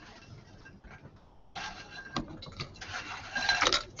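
Broken biscuits tipped from a glass bowl into a pot of chocolate sauce, clattering and rubbing, with the bowl knocking on the pot. It starts about a second and a half in and grows louder toward the end.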